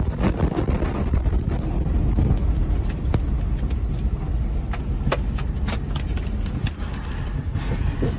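Inside a car just after the blast wave of the Beirut port explosion: a heavy low rumble with a rapid scatter of sharp clicks and knocks as the car and the phone are shaken.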